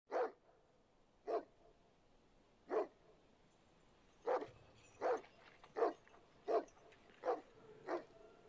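A dog barking in single barks, nine in all: spaced out at first, then coming faster, about one every three quarters of a second, from about four seconds in.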